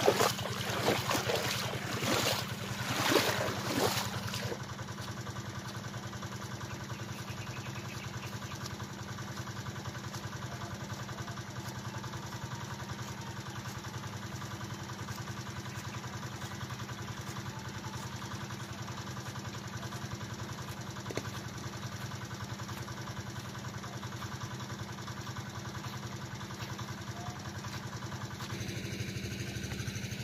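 A small engine, the irrigation water pump's, running at a steady, even speed. The pump is flooding the onion furrows. Bursts of louder noise during the first four seconds.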